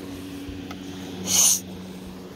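An American bully dog gives one short, hissy snort through its nose about one and a half seconds in, over a steady low hum.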